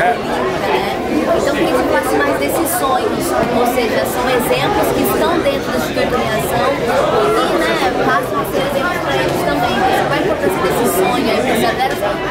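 Many overlapping voices of a crowd of children and adults chattering at once, echoing in a large hall.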